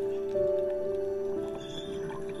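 Slow, soothing piano music, with held notes changing about once a second.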